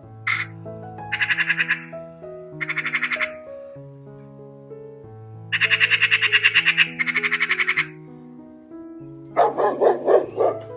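Magpies chattering: several rapid rattling bursts of about ten notes a second, over background music. Near the end a dog starts barking.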